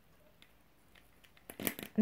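Near silence, then a few quick crackling clicks near the end as false eyelashes are handled on their plastic tray.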